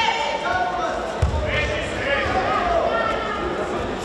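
Raised voices calling out in a large sports hall during a judo bout, with a single thump on the judo mat about a second in.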